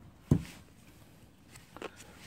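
One dull thump about a third of a second in, then quiet with a couple of faint clicks near the end, from hands handling a clear plastic blister-pack tray and plastic stir stick on a workbench.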